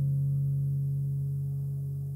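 The song's final guitar chord ringing out and slowly fading, with only its low notes still sounding.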